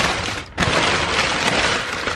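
Crumpled kraft packing paper rustling and crinkling as a hand digs through it in a cardboard box, with a brief break about half a second in.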